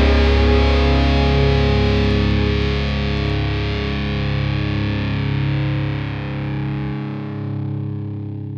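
Country rock band's final chord ringing out and slowly fading, with distorted electric guitar sustaining over it. The lowest note cuts off near the end.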